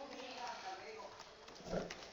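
Quiet typing on a computer keyboard, light key clicks, with a faint voice murmuring underneath.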